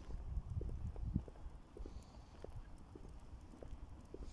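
Footsteps on a tarmac path during a brisk walk: an uneven patter of short steps and low thuds, with light rumble from the phone being carried.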